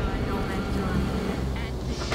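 Low, steady rumbling drone of horror-trailer sound design, with faint high tones above it. The upper part drops away near the end.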